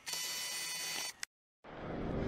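A steady electronic hum with several fixed high whining tones, part of the channel's logo card, holding for about a second and then cutting off abruptly to silence. Faint background noise fades in near the end.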